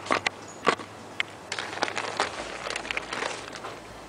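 Handling noise as the camera is moved about on concrete: a few sharp knocks in the first second, then about two seconds of crackly scraping and rustling.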